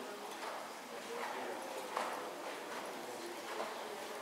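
Horse trotting on sand arena footing, its hoofbeats falling at an even rhythm, roughly one every three-quarters of a second, over faint background voices.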